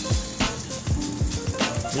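Steaks and corn sizzling on a gas grill, under background music with a steady bass beat.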